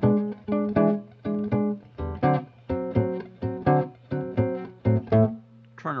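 Archtop electric guitar fingerpicked in a blues phrase over the five chord leading into the turnaround, with picked notes and chord stabs about three a second. A low steady hum runs beneath.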